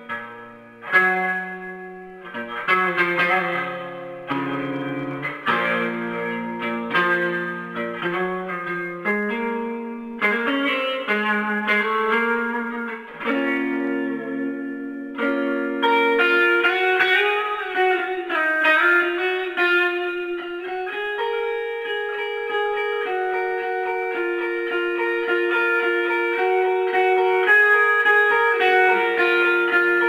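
Stratocaster-style electric guitar played solo through an amp: a run of single, sustained notes with bends. About halfway through it moves to higher notes that are held longer.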